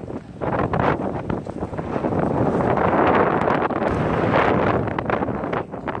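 Wind buffeting the microphone: a loud, uneven rushing that swells about half a second in and stays strong, with a brief dip near the end.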